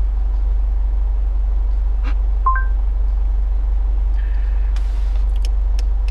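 Car engine idling steadily, heard from inside the cabin as an even low rumble. About two and a half seconds in, a short rising two-note beep comes from the CarPlay voice search.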